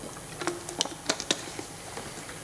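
About six light, irregular clicks and taps at the lectern, spread over a second or so, over faint room hiss.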